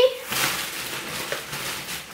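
Plastic grocery bags and food packaging rustling and crinkling as they are handled, a steady noisy hiss.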